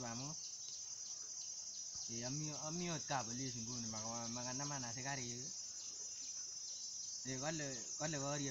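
A steady, high-pitched chorus of insects chirring in the undergrowth. A man's drawn-out voice with a wavering pitch rises over it from about two to five seconds in, and again near the end.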